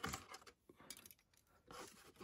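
Faint clicks and rustles of plastic model-kit sprues being handled in a cardboard box, with a near-silent pause between them.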